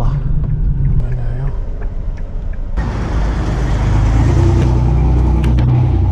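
Inside a Hyundai car's cabin while driving: steady engine and road rumble, with the road and wind noise suddenly getting louder and hissier about three seconds in.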